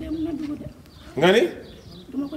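A person's voice with no clear words: a low, wavering hum or moan, then a short, loud cry with a sweeping pitch just past the middle.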